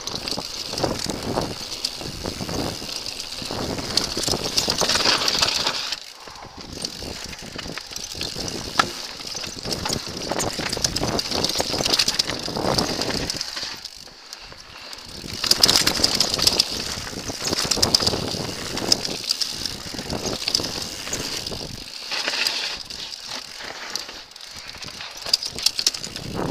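Mountain bike riding fast down a rough dirt forest trail: tyres crunching over dirt and stones, and the bike rattling with many small knocks as it bounces over the ground. The noise swells and drops every few seconds with the terrain.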